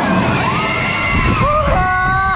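Loud theatre show soundtrack: exaggerated character voices crying out over a deep rumble, with audience laughter at the start.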